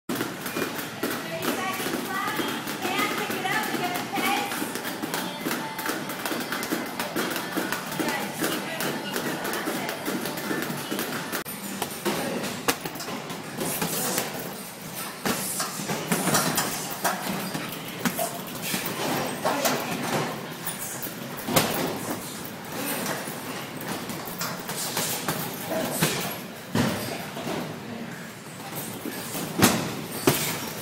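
Kicks and punches landing on heavy punching bags: repeated sharp slaps and thuds at irregular intervals, over indistinct voices in a large room.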